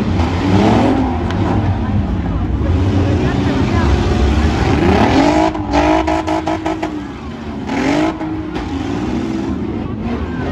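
Several minivan engines in a demolition derby revving hard up and down over one another. About six seconds in comes a rapid run of sharp bangs as the vans collide.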